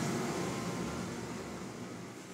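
Whirlpool tub jets running, a steady rushing hiss and churn of water and air that gradually fades down.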